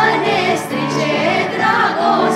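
A group of girls singing a song together, several voices at once over steady held low notes.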